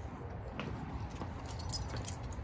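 Light metallic jingling, a few short clinks in the second half, over a low steady background rumble.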